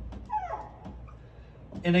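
Dry-erase marker squeaking and rubbing on a whiteboard as a word is written, with a falling squeak about a third of a second in followed by fainter scratching strokes.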